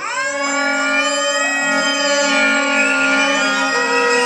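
Free-improvised music of voice, clarinet and cello: loud long-held tones rich in overtones that come in suddenly at the start with a quick upward slide, then sustain steadily over a lower held note.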